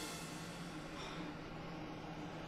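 Faint steady room noise with a low hum, just after the music has stopped.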